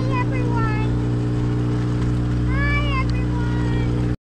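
A boat's engine running at a steady speed, a constant low hum, as the boat motors across calm water. A few short, high, rising-and-falling calls sound over it near the start and again about two and a half seconds in.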